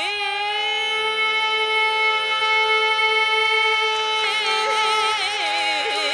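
Female Carnatic vocalist holding one long steady note for about four seconds, then breaking into rapid wavering pitch ornaments (gamakas). Under the voice runs the steady drone of a tanpura.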